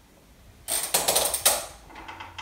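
A chair creaking and rattling as a person sits down on it: a rapid burst of clicks and scrapes lasting about a second, starting just under a second in.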